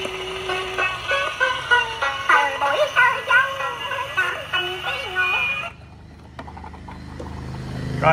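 A vocal song playing from a 78 rpm record on a Columbia Grafonola portable wind-up gramophone. It cuts off suddenly a little before six seconds in, leaving a low hum and a few faint clicks.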